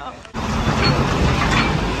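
Steady street traffic noise with a vehicle engine running nearby, coming in abruptly about a third of a second in.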